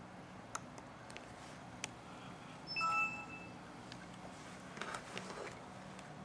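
A sharp click, then about three seconds in a short electronic chime from the laptop's speakers as Windows 7 starts to shut down, with a few more faint clicks around it.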